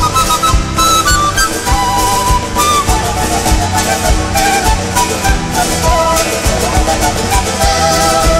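Live Bolivian morenada played by an Andean folk band, in an instrumental passage: a flute-like wind instrument carries the melody over guitars, bass and drums with a steady beat.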